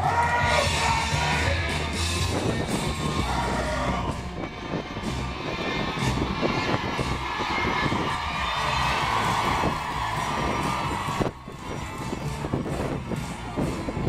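Live pop concert music with a heavy bass beat, heard among a close crowd of fans screaming and cheering, the screams swelling into a long, sustained shriek midway through.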